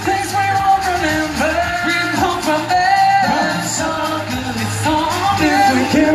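Male pop vocal group singing live over loud pop backing music with a steady bass line.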